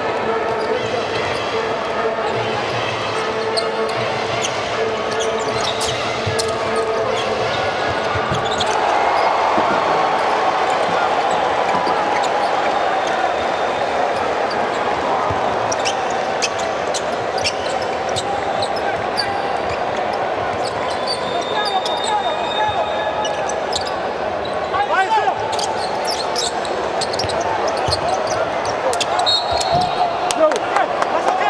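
Game sound from a basketball court: a ball dribbling and bouncing on the hardwood floor, with voices in the hall throughout.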